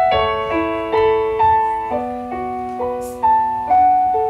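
Roland stage keyboard playing a piano sound: an unhurried melody of struck notes and chords, each left to ring and fade, with a lower note held through the middle.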